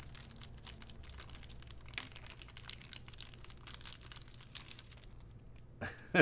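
Trading cards being handled and sorted by hand: faint rustling with many small scattered clicks, over a low steady hum.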